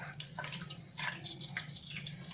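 Oil in a saucepan bubbling gently at low confit heat, a faint scatter of small irregular pops and drips.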